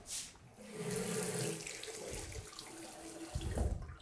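Water running from a single-lever bathroom mixer tap into the sink basin, turned on about a second in and shut off near the end.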